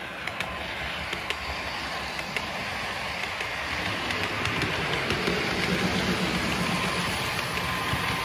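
OO gauge model InterCity 125 train running past on layout track, its motor humming and wheels clicking over rail joints. It grows louder as it nears.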